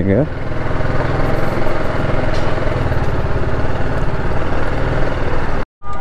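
Motorcycle engine running steadily at low revs as the bike rolls slowly, heard close up from the rider's position. It cuts off abruptly near the end.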